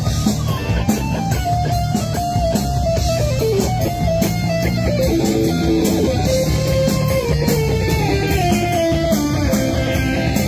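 Live rock band playing an instrumental passage: a guitar carries a sliding melody over bass, drums and steady cymbal strokes.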